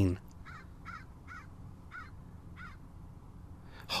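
A bird calling faintly: five short notes, each rising and falling in pitch, unevenly spaced over the first three seconds, over a low steady hum.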